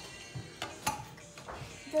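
A few light clicks and knocks, the sharpest about a second in, over a quiet room.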